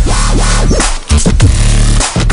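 Loud electronic music with a heavy bass beat and a short break about a second in.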